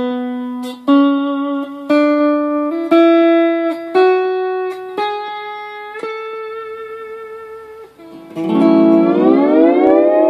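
Hawaiian lap steel guitar in G6 tuning played with a steel bar: single notes plucked about one a second, climbing step by step up a major scale, the last one left ringing out. Near the end a chord is plucked and slid upward with the bar, then held.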